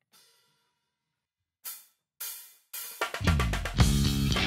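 A drummer's count-in of three cymbal taps about half a second apart, then a full rock band comes in about three seconds in with drums, bass and electric guitar.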